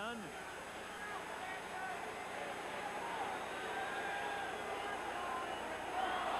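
Hockey arena crowd noise: a steady hubbub of many voices with faint scattered shouts, growing slightly louder.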